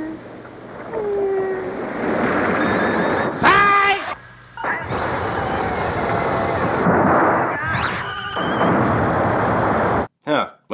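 Film soundtrack of a monster battle: a continuous rumble of explosion-like noise, with a loud pitched cry about three and a half seconds in and a shorter one near eight seconds. The noise drops out briefly just after the first cry.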